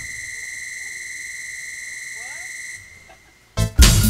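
A single high, steady synthesizer note held for nearly three seconds while the groove drops out. It cuts off, there is a moment of near quiet, and drums and keyboards come back in near the end.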